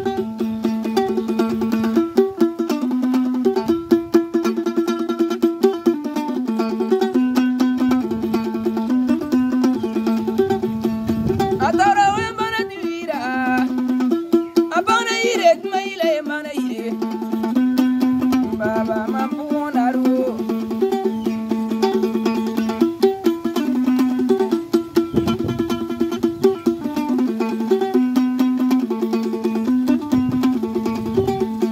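Kologo, the Frafra two-string calabash lute, plucked in a fast, repeating riff. A man sings a short phrase over it midway through.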